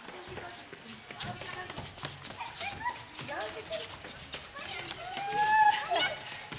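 Short calls and squeals from a woman and small children at play, with some clatter, ending in one long, loud call that rises and then holds.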